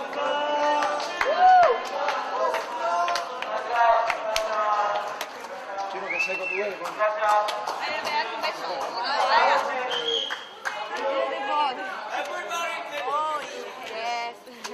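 Crowd chatter: many people talking and calling out over one another, with scattered clicks and knocks.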